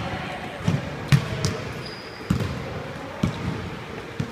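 Basketballs bouncing on a hardwood gym floor: irregular, unevenly spaced thuds that echo in the hall.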